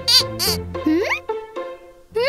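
Cartoon sound effect of a toy bird whistle: two short warbling trills, then a rising whistle glide about a second in, over children's background music.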